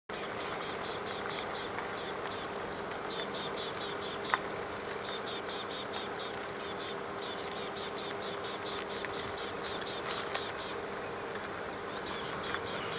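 Insects chirping in an even, fast pulse of about four to five chirps a second, over a faint steady low hum, with one sharp click about four seconds in.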